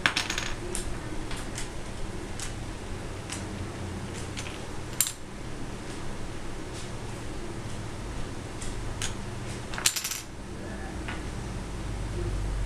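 Small wooden dominoes clicking as they are picked up, set down and knocked against one another on a hardwood floor: single clicks about once a second, with a short clatter at the start and another near the end.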